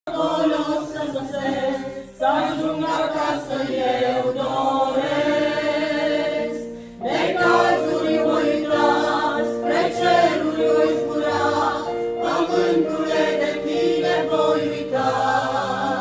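Mixed choir of women and men singing a Romanian Pentecostal hymn together, its phrases broken by brief pauses about two and seven seconds in.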